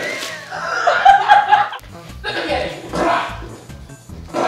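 Two women laughing hard, in bursts.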